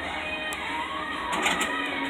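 Background music playing, with a short mechanical whir and clatter about a second and a half in as a Boxer arcade punching machine lowers its punching bag into place for the next punch.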